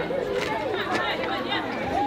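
Several voices talking over one another: overlapping chatter of a group of teenagers, with no single clear speaker.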